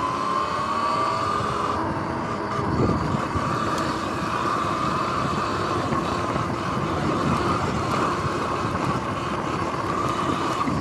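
Sur-Ron X electric dirt bike's motor and drivetrain whining as it accelerates. The pitch rises for the first second or so and then holds steady, over a rumble of knobby tyres on rough, grassy ground.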